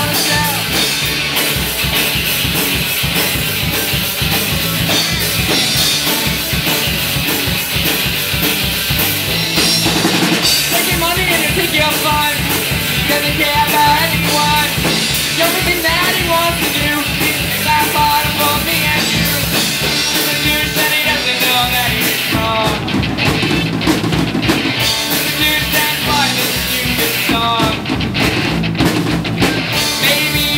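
A live punk-rock band playing loud: electric guitars over a drum kit, with a steady driving beat.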